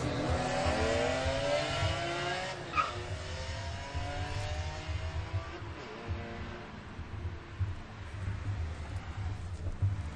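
Cars on the highway going by: an engine's pitch falls away over the first few seconds as a car passes, then another engine climbs in pitch, over a low traffic rumble that fades toward the end. A brief high chirp sounds about three seconds in.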